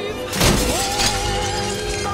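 A sudden loud crash about half a second in, its noise trailing off over roughly a second, laid over music with long held notes.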